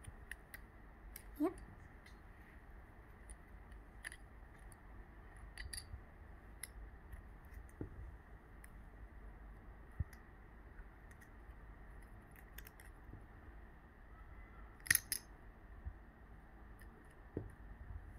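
Plastic toy coins being snapped out of their moulded plastic frame: scattered quiet clicks and snaps, a few seconds apart, the loudest about fifteen seconds in.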